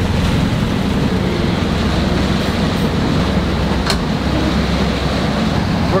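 Steady low rumble and rushing noise of a sailboat underway at night in rough seas, heard from inside the helm station, with a single sharp click about four seconds in.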